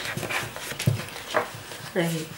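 A woman's quiet, breathy laughter in a few short puffs.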